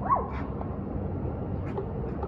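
A cat's single short meow, rising then falling in pitch, right at the start. It sounds over a steady low background rumble.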